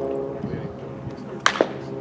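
A sharp pop about one and a half seconds in as the pitched baseball arrives at home plate, followed by a smaller click.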